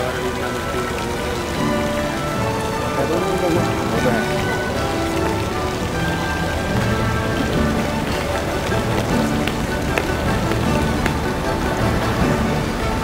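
Steady splashing of fountain water, under background music with held tones.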